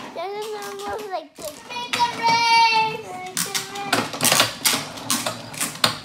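A child's wordless vocalizing, with a high drawn-out squeal in the middle, then a run of quick rattling clicks.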